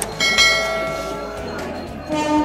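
A single bright bell chime: a sound-effect ding that strikes about a quarter second in and rings away over about a second, the notification-bell sound of an animated subscribe-button overlay.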